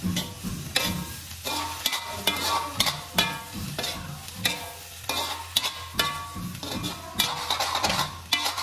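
Metal ladle scraping and clanking against a black wok as chicken pieces are stir-fried over a sizzle, in quick irregular strokes that each ring briefly.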